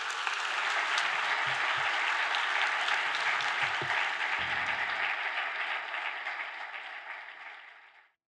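Large audience applauding: a dense, steady crackle of many hands clapping that slowly fades away over the last few seconds.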